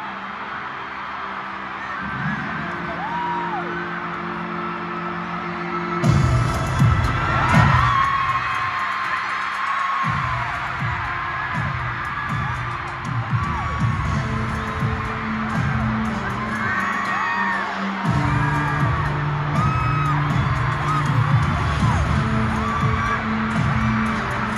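Loud pre-show video soundtrack playing over a stadium PA while a crowd of fans screams and whoops. Low sustained tones give way about six seconds in to a heavy, pounding beat.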